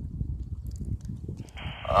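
Low rumble on the microphone. About one and a half seconds in, the Puxing PX-728 handheld transceiver's squelch opens with a hiss from its speaker as an incoming FM transmission begins.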